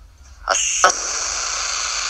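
Steady hiss of noise on a recorded phone call, starting abruptly with a click about half a second in, followed by a second click shortly after.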